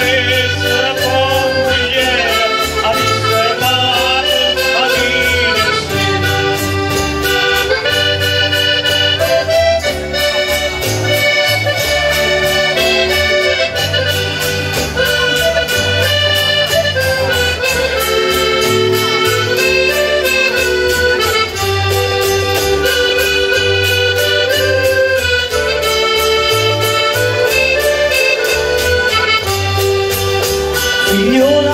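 Live traditional folk music from a small band with acoustic guitars, playing an instrumental passage: a melody of long held notes over a steady bass.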